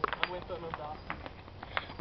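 Faint, indistinct voices of people talking, with a few light, irregular taps of footsteps on an asphalt road.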